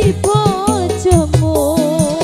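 Live dangdut koplo band music played loud on an organ tunggal: a keyboard melody over a driving drum beat.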